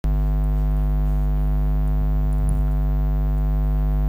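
Steady electrical mains hum: a buzz at about 50 Hz with a long ladder of overtones, fairly loud and unchanging.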